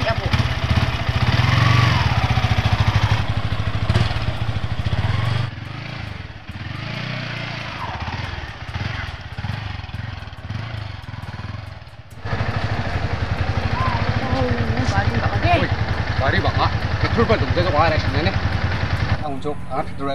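Sport motorcycle engine running with a steady low rapid pulse, ridden off along a dirt path; it drops in level about five seconds in and comes back louder about twelve seconds in. People's voices are heard over it in places.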